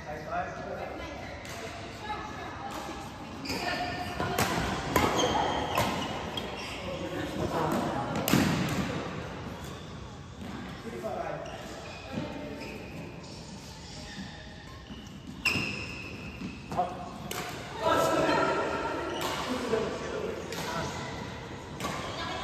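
Badminton play in a large echoing hall: sharp, irregular knocks of rackets striking a shuttlecock and feet on the court, with players talking.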